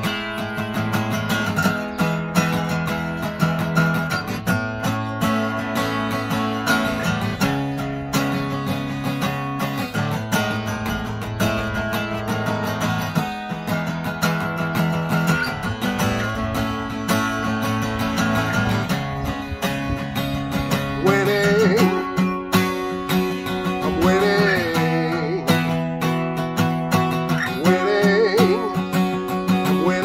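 Acoustic guitar strummed in a repeating chord pattern, the chords changing every two seconds or so. About two-thirds of the way in, a man's singing voice joins over the guitar.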